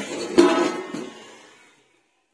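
A steel lid set onto a kadai of frying okra: a small click, then a metal clank about half a second in that rings and fades away.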